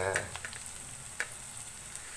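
Diced onions sizzling in a metal wok, a steady frying hiss, with one sharp click about a second in.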